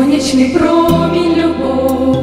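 A small group of women singing a Christian song together in harmony into handheld microphones, holding long notes.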